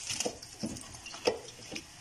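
Cut potato fries deep-frying in hot oil in a wok, a steady sizzle, with several short plops and splashes as handfuls of raw fries are dropped into the oil.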